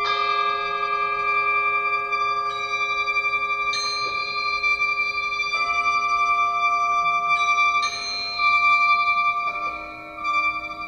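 A 37-reed sheng playing sustained chords of many held notes at once, moving to a new chord every second or two.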